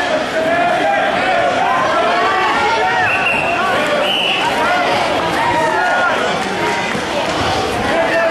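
Loud, steady din of many overlapping voices and shouts from the crowd in a gymnasium, with two short high tones about halfway through.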